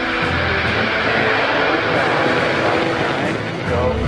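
SpaceX Falcon 9 rocket lifting off, its nine first-stage engines making a loud, steady rushing noise.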